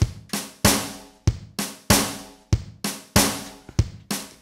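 Zoom MRT-3 drum module playing a basic kick and snare pattern, triggered over MIDI by a step sequencer. The hits come about three a second in a steady loop, and the accented steps play louder than the rest.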